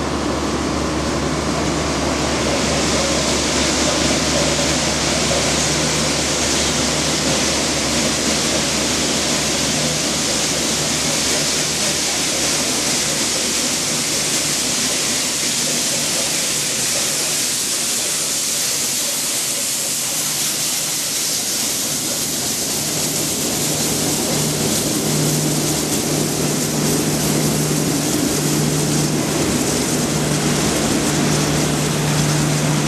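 A train running, with a steady rushing hiss over a low steady hum; the hiss grows stronger about two seconds in.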